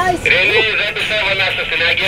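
Handheld VHF marine radio receiving a transmission: a thin, tinny voice comes through the set's small speaker, starting suddenly about a quarter second in. It is the canal control answering the boat's call for permission to transit.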